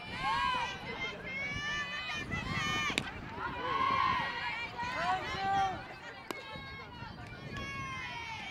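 Several high-pitched young voices shouting and calling out over one another, like softball players' chatter and cheers from the field and the dugouts, with words not made out. Two sharp clicks cut through, one about three seconds in and another around six seconds.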